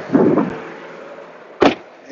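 Car door pulled shut with a single sharp thud about one and a half seconds in, after a brief shuffle of someone settling into the seat.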